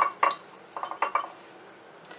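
A hand stirring water and baby shampoo in a glass dish to work up a foam, with a few short clinks against the glass in the first second.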